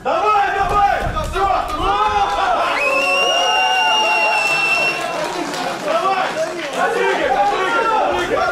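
A small crowd of spectators shouting and cheering over one another as the fight is stopped. A high steady note is held for about two seconds in the middle.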